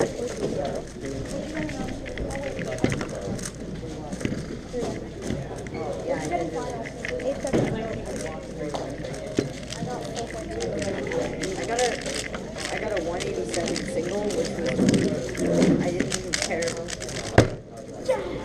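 Background chatter of many voices in a room, with fast light clicking of a 3x3 speed cube being turned. Near the end comes one sharp knock as the cube is set down and the timer stopped.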